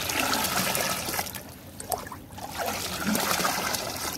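Milky homemade phenyl poured in a stream from a plastic mug back into a large plastic tub of the same liquid, splashing and trickling into it as it is mixed by pouring. The pour eases off about two seconds in, then picks up again.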